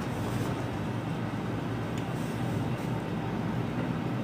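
Steady low hum and hiss of room background noise, with no distinct events.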